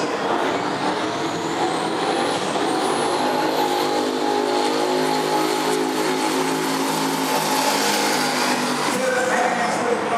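Two V8 drag cars, a V8-swapped Nissan Silvia and a Ford Falcon XR8, launching and running at full throttle down the drag strip, heard from the grandstand. Their engines hold a steady, loud note as they pull away, which changes near the end.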